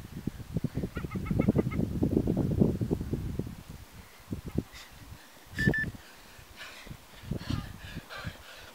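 Wind rumbling and buffeting on the microphone for the first few seconds, then easing. A short run of quick bird pips sounds about a second in, and a single short bird call comes near the middle.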